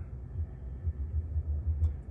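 Low, steady rumble inside the cabin of a Jaguar I-PACE electric car in traffic, with no engine note.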